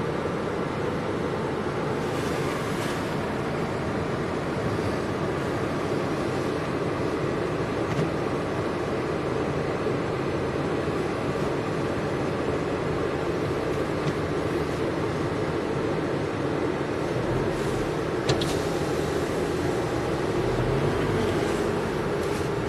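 Steady engine and road noise of a car driving slowly, heard from inside the cabin, with one brief click about three-quarters of the way through.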